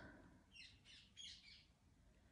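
Faint bird chirps: two quick runs of short, high notes, each note falling in pitch.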